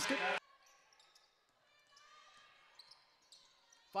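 After a voice ends just in, faint sound from a basketball court, close to silence: a basketball bouncing on the hardwood floor, with faint distant voices in the gym.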